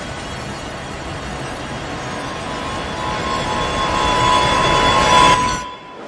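Electroacoustic noise music: a dense wash of hiss and rumble with a steady tone, growing louder over several seconds, then dropping away abruptly near the end.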